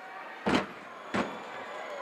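Two sharp thuds about two-thirds of a second apart: wrestlers' bodies hitting the canvas of the wrestling ring during a takedown.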